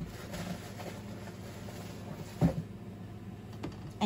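Hands rummaging in a packed mail-order box and handling its packaging: soft rustling and small clicks, with one brief louder sound about halfway through.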